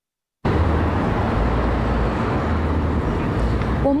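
About half a second of dead silence, then steady outdoor traffic noise with a deep low rumble.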